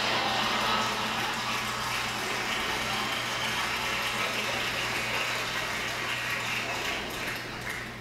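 Studio audience applauding, a steady dense clatter of clapping heard through a TV's speaker, easing off near the end.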